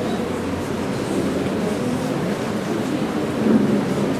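Children's choir singing, picked up as a muffled, rumbling blur without clear words.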